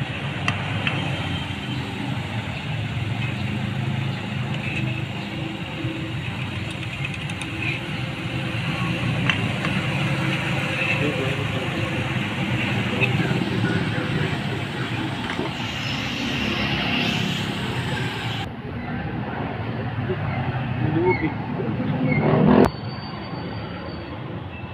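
Steady background hum of running motor vehicles mixed with indistinct voices, with a few faint metal clicks from hand tools on engine parts. The sound changes abruptly about three-quarters of the way through, and a sharp loud knock comes near the end.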